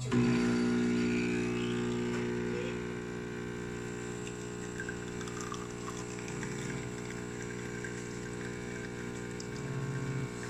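SMEG espresso machine's pump switching on suddenly and running with a steady hum as it pulls a double espresso shot through the portafilter. It is a little louder in the first couple of seconds, then settles.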